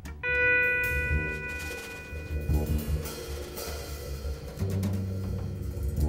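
Live instrumental trio of double bass, drum kit and Teuffel Tesla headless electric guitar playing. A long ringing note enters about a quarter second in and fades after two or three seconds, over low bass notes and loose drum strokes.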